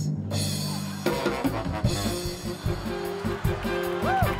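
Band music for a dance entrance: a held low chord, then about a second in a drum kit kicks in with a steady beat under the band.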